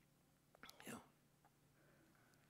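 Near silence: room tone with a faint steady low hum, and a man saying "you know" softly about half a second in.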